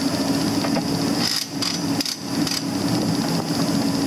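A steady mechanical drone with a constant hum, and a few short knocks in the middle from work on a John Deere 6200 tractor's opened transmission.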